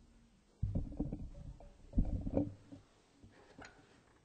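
Microphone handling noise: two bursts of low rumbling and knocking, the second about a second and a half after the first.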